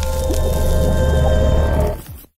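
Music sting for an animated logo intro: a heavy steady low drone with sustained tones and a dense noisy layer over it. It drops away at the very end.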